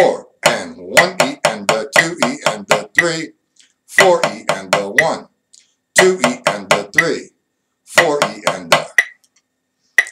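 Drumsticks playing a 4/4 reading exercise on a drum at 60 beats per minute. Runs of quick sixteenth-note strokes, about four a second, come in bursts of a beat or so, with short gaps for the longer notes and rests.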